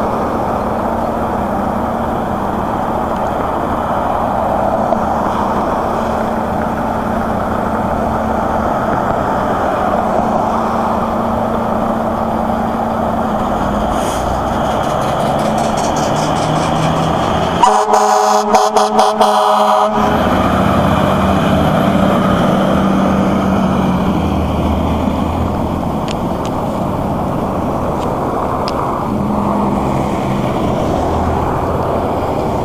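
A fire truck's air horn sounds in several short, quick blasts a little past the middle, over steady road traffic. Afterwards a heavy truck engine pulls away.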